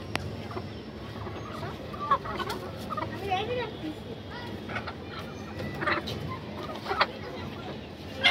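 Brown desi chickens clucking among themselves, with a few short, sharp calls about two seconds in and again near six and seven seconds.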